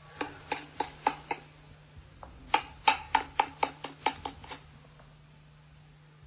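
A metal spoon knocking against an enamel bowl in quick taps about four a second: a run of five, a pause of about a second, then about eight more.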